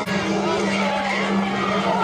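Crowd of students shouting and calling out across the field, many voices overlapping, over a steady low hum.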